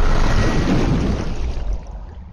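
Turbulent water rushing and churning after a plunge, loud at first, then dropping away near the end to a quieter, muffled underwater gurgle.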